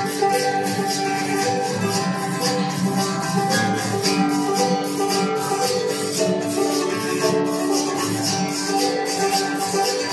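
Banjo and acoustic guitar playing an upbeat hoedown tune together, with a shaker keeping the rhythm. This is the instrumental intro, before the singing starts.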